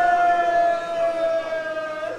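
Public-address microphone feedback: a single steady high tone that sinks slightly in pitch and fades near the end.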